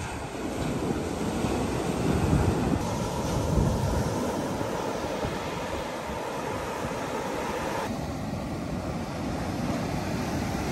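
Ocean surf breaking and washing up a sandy beach, a steady rush of waves, with wind gusting on the microphone, strongest in the first few seconds. The sound changes abruptly about three seconds in and again near the end.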